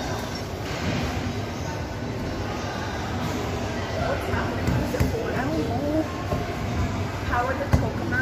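Steady low rumble from a steam-locomotive exhibit's simulated train sound, with people's voices over it.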